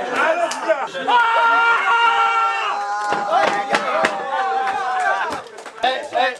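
A group of men chanting and shouting together, with long held shouted notes and a few sharp claps in the second half.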